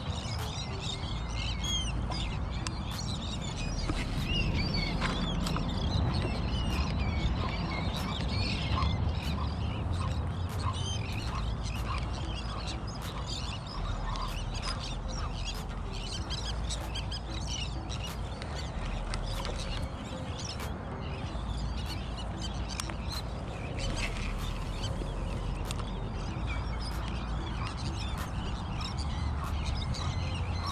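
A large flock of seabirds calling continuously, many short, overlapping cries, over a low rumble of wind on the microphone.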